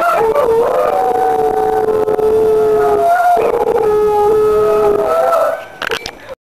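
A dog howling along to a mobile phone ringtone, in two long held howls with a short break a little after three seconds; the second howl trails off shortly before the end.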